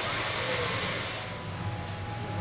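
Outdoor ambience: a steady hiss with faint distant voices. The hiss drops away about a second and a half in.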